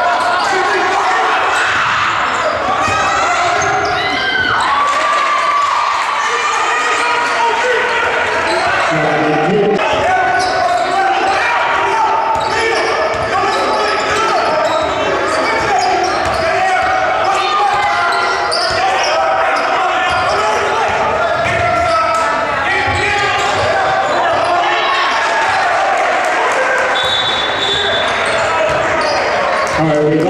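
Basketball dribbled and bouncing on a hardwood gym floor, over constant shouting and chatter from players and spectators, echoing in a large gym. A short high sneaker squeak comes near the end.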